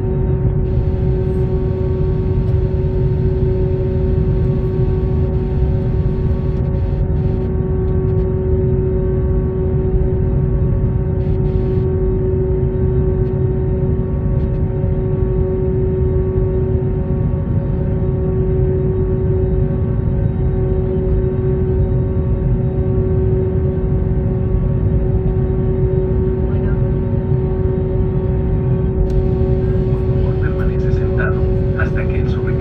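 Steady cabin noise inside an Airbus A321neo taxiing: a constant low rumble with a steady hum of several tones from the engines at idle and the cabin air system. A few faint ticks sound around a third of the way in, and a higher hiss rises just before the end.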